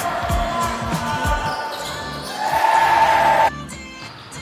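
Basketball bouncing on a hardwood gym floor, a few dribbles about half a second apart, amid game noise in the hall. The sound cuts off abruptly about three and a half seconds in, leaving quieter music.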